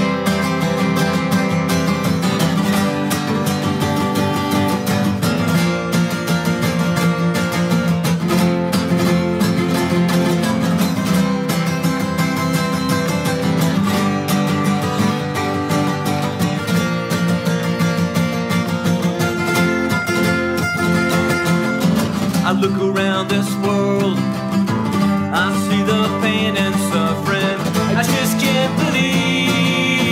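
Two acoustic guitars playing a song together live, strummed and picked in a steady rhythm.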